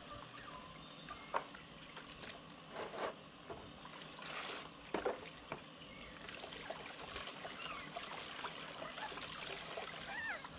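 Soapy water sloshing and dribbling in a plastic basin as a puppy is washed by hand, with a few short, sharper splashes about one and a half, three and five seconds in.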